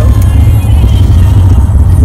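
Steady, loud low rumble of a car on the move, heard from inside the cabin.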